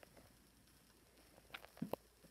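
Near silence: room tone, with a few faint short clicks near the end.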